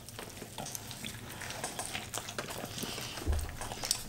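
Two people chewing mouthfuls of a bacon, egg and hash-brown breakfast burger up close to the microphone: a steady run of small wet crackling mouth clicks, with a soft low thump a little after three seconds.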